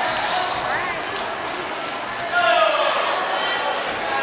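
Taekwondo sparring in a large echoing hall: scattered sharp slaps and thuds of kicks and feet on the mat under steady crowd chatter. About two and a half seconds in, a loud yell falls in pitch over half a second.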